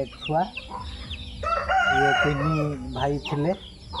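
A desi rooster crowing once, one long drawn-out call of about a second and a half starting about a second and a half in.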